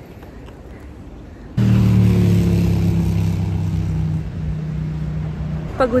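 A road vehicle running close by: a steady low hum with a few higher tones that slowly fall in pitch. It starts suddenly about one and a half seconds in, after quiet outdoor ambience, and eases off slightly near the end.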